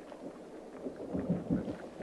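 Faint low rumbling background noise, with a few soft low bumps in the second half.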